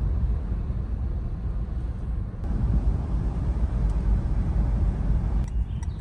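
Road and engine noise inside a moving car's cabin: a steady low rumble with a hiss of tyres and air over it. The noise gets louder about two and a half seconds in.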